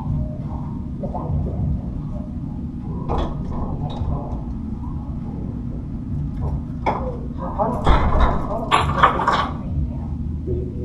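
Indistinct voices over a steady low room rumble, with a few sharp clicks, then a louder burst of voices and clatter about eight seconds in.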